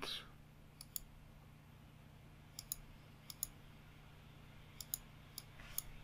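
Faint computer mouse button clicks, about ten of them, mostly in close pairs, as points are picked on screen.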